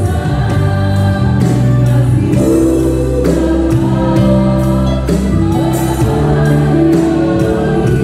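A live worship band playing a slow gospel song: held keyboard chords and bass notes, with an electronic drum kit keeping a steady beat of cymbal hits.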